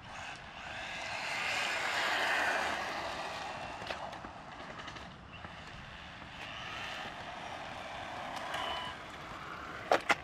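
MJX Hyper Go RC car running fast on asphalt: its electric motor and tyres make a rushing noise that rises and falls, loudest about two seconds in and swelling again in the second half, as the car comes back.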